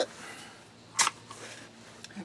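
A shovel blade scraping once into sand, a short gritty scrape about a second in, against quiet outdoor background.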